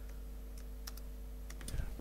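A few sharp, faint clicks from a laptop being operated, over a steady low electrical hum, with a soft thump near the end.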